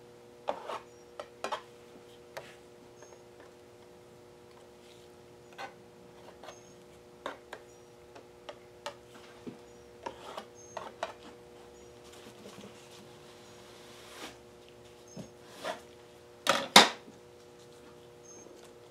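Scattered light taps, clicks and scrapes of a hand-held paint spreader working wet acrylic paint along a canvas edge, over a faint steady hum. The loudest is a double knock near the end as the spreader is put down on the table.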